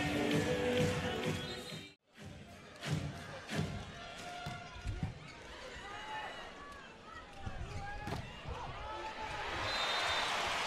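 Indoor volleyball rally: the ball is struck sharply several times, and sneakers squeak on the court floor against steady crowd noise. Louder crowd noise fills the first two seconds and cuts off abruptly at an edit.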